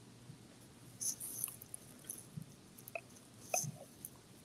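Faint breaths and sniffs at a whiskey glass as bourbon is nosed, about a second in, with a few small clicks later.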